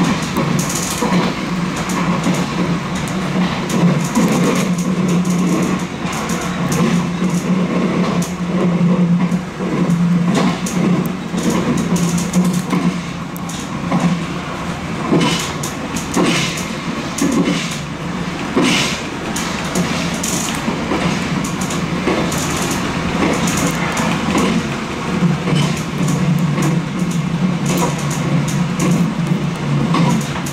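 Nankai limited express electric train running along the track, heard from just behind the driver's cab: a steady low hum with wheel-on-rail running noise and scattered sharp clicks from the wheels over rail joints, clustered a little past the middle.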